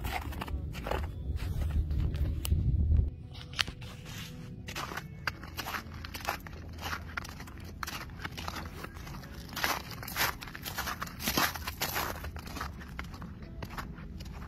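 Footsteps crunching on snow-covered ice, with scattered crackling clicks. There is a low rumble for about the first three seconds.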